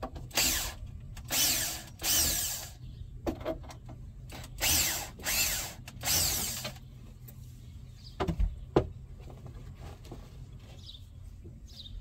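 Cordless drill/driver backing out screws: six short bursts of motor whine in two groups of three. A few sharp knocks follow about eight to nine seconds in.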